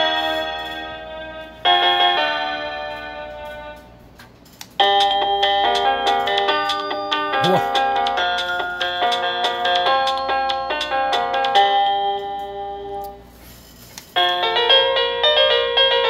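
Electronic doorbell chime playing melody tunes through its small speaker, one after another as its selectable tunes are stepped through. A short tune starts about two seconds in and fades, a longer melody plays from about five to thirteen seconds, and another begins near the end.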